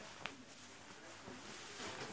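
Faint rustling of cloth trousers being handled and lifted, with one brief click about a quarter of a second in.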